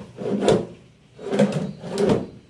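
Plywood drawer on metal runner slides being slid in and out by hand, twice: each stroke is a short sliding rush that ends in a wooden knock as the drawer stops.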